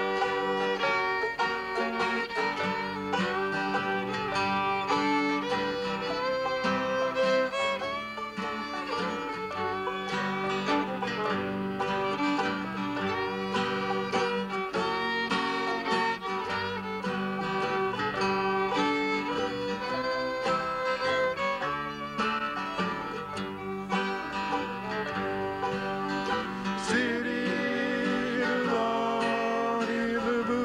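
Live bluegrass band playing an instrumental passage of a tune: fiddle, banjo, mandolin, acoustic guitar and upright bass together.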